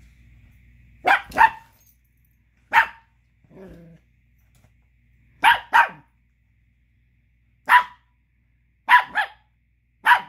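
Chihuahua puppy barking: eight short, sharp barks, mostly in quick pairs a couple of seconds apart, aimed at another dog chewing a bone he wants. A softer, lower sound comes just before four seconds in.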